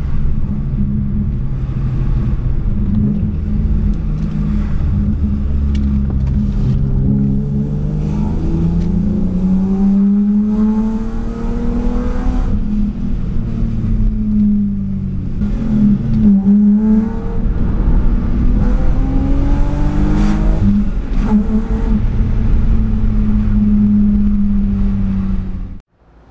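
BMW 328i E36's straight-six, breathing through a stainless exhaust and 6-into-2 header, heard from inside the cabin while driving: the engine note climbs under acceleration and drops back at the shifts of the manual gearbox, then cuts off abruptly near the end.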